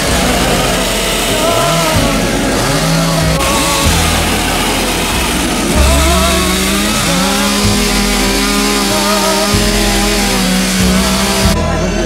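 Two-stroke chainsaws running and cutting into blocks of wood for carving, the engine pitch rising and falling as the throttle changes. The sound stops abruptly near the end.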